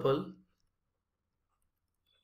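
A man's voice finishing a spoken word, then near silence for the rest of the time.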